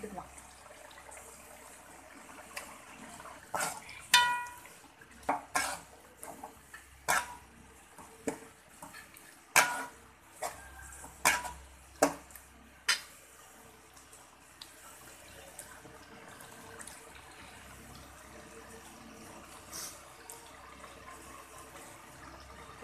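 Perforated metal ladle stirring thick chicken gravy in a metal kadai, knocking and scraping against the pan in a dozen or so sharp clinks, one ringing out briefly. The clinks stop about two-thirds of the way through, leaving a faint steady background.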